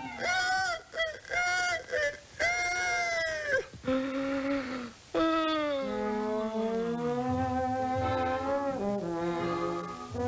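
Cartoon rooster crowing as a bugle call: a run of short, brassy, clipped notes, then longer held notes that slide downward, with low sustained music underneath.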